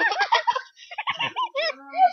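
A boy laughing hard in a series of short, high-pitched bursts.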